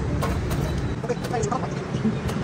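Brief, indistinct voices over a steady low rumble like street traffic.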